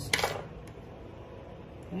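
A short metallic clatter, under half a second long, from the metal mixer stirrer being handled as it is wiped clean of epoxy. Soft handling noise follows.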